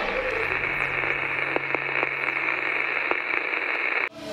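Steady radio-style static hiss with a low hum underneath and a few faint crackles, cutting off suddenly at the end.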